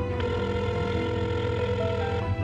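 Telephone ringback tone: one steady tone of about two seconds, beginning just after the start, the sign that the call is ringing and not yet answered. Soft background music runs under it.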